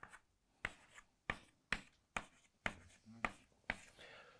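Chalk on a blackboard: a run of about eight short, faint taps and strokes, roughly two a second, as small arrows are drawn onto a grid.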